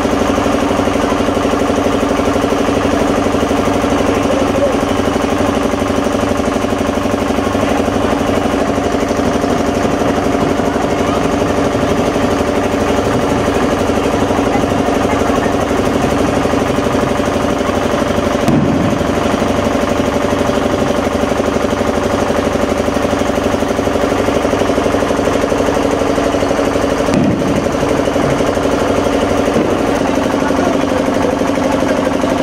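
An engine running steadily at idle, a continuous unchanging mechanical hum.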